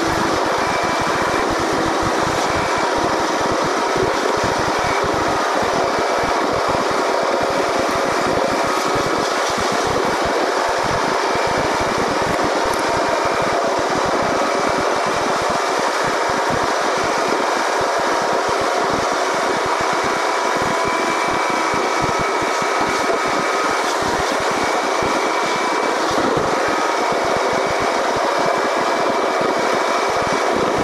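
Steady road and engine noise of a car driving at speed, heard from inside the cabin, with a few faint steady whining tones under the even rumble.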